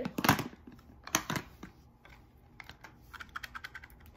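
Hands handling a plastic Mini Brands capsule ball and unwrapping a small wrapped pod from it. A few sharp clicks and rustles come in the first second and a half, then lighter scattered clicks and crinkles.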